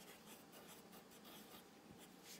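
Near silence: faint room tone and hiss in a pause of the narration.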